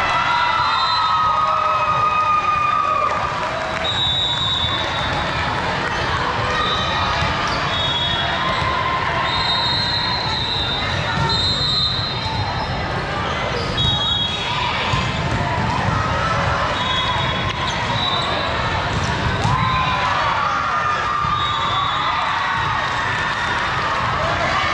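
Volleyball match play in a large, echoing hall: balls being hit and bounced, players calling out and spectators cheering, with other courts' games going on around.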